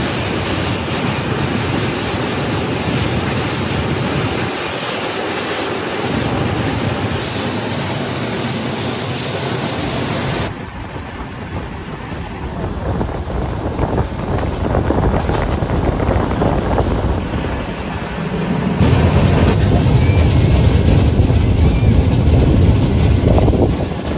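Moving passenger train running, with wind buffeting the microphone, heard from an open coach door. The sound changes abruptly about ten seconds in and grows louder and deeper near the end.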